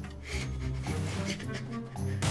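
Cartoon soundtrack music with a rubbing, scraping sound effect of sticks being rubbed together to start a fire.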